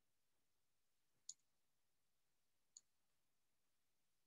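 Near silence with two faint, sharp clicks about a second and a half apart, from a computer being operated while the screen is shared.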